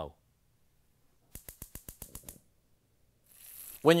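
A rapid run of about ten sharp clicks lasting about a second, typical of a gas range's spark igniter lighting the burner. Near the end a faint hiss starts, bacon beginning to sizzle in the skillet.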